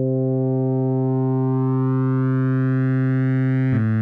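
A single held synthesizer note from UVI Falcon's wavetable oscillator, growing steadily brighter as the phase distortion amount is turned up and adds harmonics. Just before the end it changes to a lower note.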